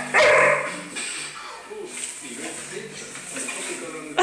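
Young bullmastiff barking and yipping, excited for her dinner, with a person laughing. The sound is loudest in the first second and quieter after it.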